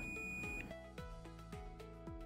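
Multimeter continuity beeper sounding one steady high beep that cuts off a little over half a second in, as the probes bridge the common and normally closed pins of the unpowered surge protector's dry contact: the contact is closed. Soft background music with steady notes runs underneath.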